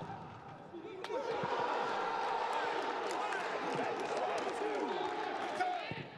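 Footballers shouting and celebrating a goal in an empty stadium, many voices overlapping, with a sharp knock about a second in and scattered thuds of a ball.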